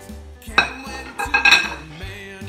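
Kitchen utensils clinking against a dish while a salad is mixed, in two short clusters, about half a second in and again around a second and a half, over background music.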